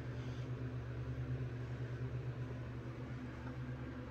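Burlington hydraulic elevator's pump motor running as the car goes up, a steady low hum heard through the closed machine-room door.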